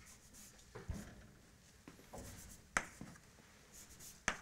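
Chalk writing on a blackboard: faint scratching strokes with a few sharp taps, the loudest a little before three seconds in.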